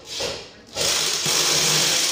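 Corded electric drill-driver running screws into a chair bracket: one short trigger burst, then a steady run from just under a second in.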